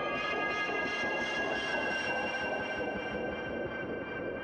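Intro music: a sustained electronic drone of several held high tones over a dense, hazy bed, beginning to fade near the end.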